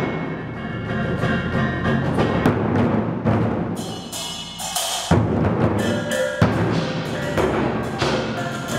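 Ensemble of Chinese barrel drums struck with wooden sticks in a driving rhythm, over sustained pitched music, with heavy strokes about five and six and a half seconds in.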